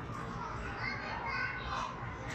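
Background hubbub of an indoor children's play area: faint children's voices and distant chatter, with no loud sound standing out.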